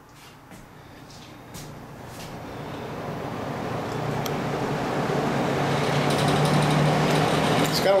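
A 1966 Penncrest 20-inch box fan with a Redmond motor starting on low speed. Its motor hum and rushing air build steadily as the blades come up to speed. A little rattle comes from the grill, where a screw is missing.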